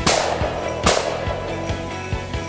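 Two shotgun shots about a second apart, each a sharp crack with a short ringing tail, fired at a flushed bird, over background music with a steady beat.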